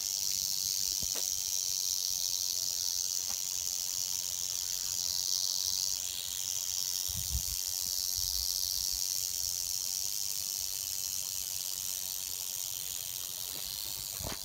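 Canebrake rattlesnake rattling its tail in a steady, high-pitched buzz, the defensive warning of an agitated snake.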